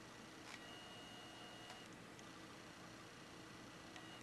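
Near silence, broken by a faint click about half a second in and a thin, steady high whine lasting about a second, from the camera's zoom motor zooming out.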